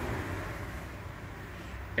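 Quiet, steady background noise: a low rumble, easing off slightly over the first second.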